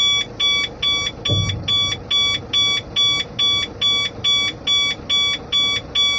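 A Howo dump truck's cab warning beeper sounds a steady run of short, high beeps, about two and a half a second, while the tipper body is lowered on PTO hydraulics. A low engine hum sits underneath.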